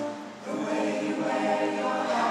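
Mixed choir singing long held notes, starting about half a second in.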